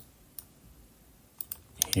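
A few sharp, separate clicks from working a computer mouse and keyboard: one at the start, one about half a second in, and a quick cluster of three or four near the end.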